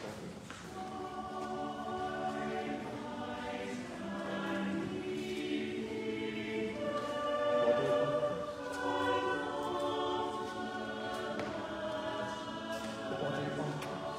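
Church choir singing slow, sustained notes, coming in about half a second in and swelling.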